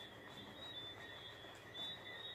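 Faint, high-pitched insect trill in short repeated pulses over quiet room tone.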